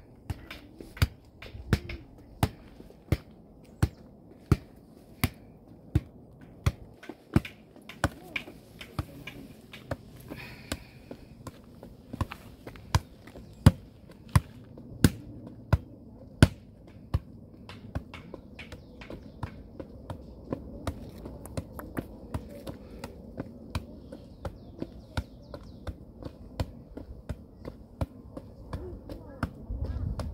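An anyball exercise ball swung on its cord, striking in a steady rhythm of sharp taps about one and a half a second. About halfway through the taps turn lighter and come faster.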